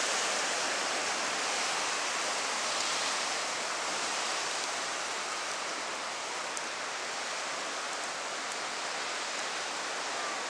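Turbulent river water of a tidal bore rushing and churning past a rocky bank: a steady rushing noise that eases slightly over the stretch.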